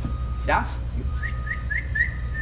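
High whistled chirps: four quick rising notes about a fifth of a second apart, then a longer held note near the end, over a steady low hum.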